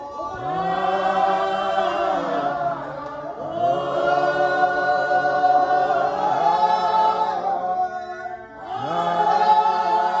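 A church congregation singing a hymn together in long held notes, with short breaks between lines about three seconds in and again past eight seconds.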